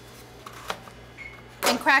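Quiet kitchen with a faint steady hum and one light, sharp click about a third of the way in, as an egg is lifted out of a cardboard egg carton.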